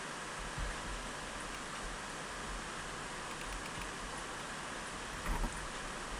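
Steady hiss of wind and choppy sea water around a kayak out on the water, with two faint low bumps, one about half a second in and one near the end.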